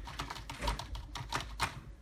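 Logitech K400 Plus wireless keyboard being typed on rapidly and at random: a run of irregular key clicks, about five a second.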